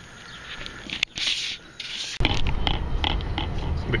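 A click and a few short scraping, rustling noises. About two seconds in, it cuts abruptly to the steady low rumble of road and engine noise heard inside a moving car.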